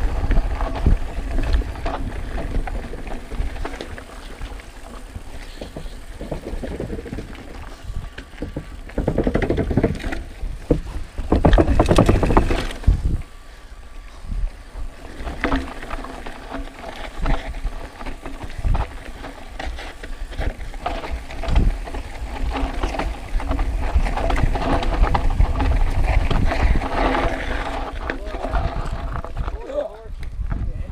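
Mountain bike rolling down a dirt and gravel singletrack: tyres crunching over the ground and the bike rattling over bumps, with wind on the microphone. A louder rushing stretch comes about ten to thirteen seconds in.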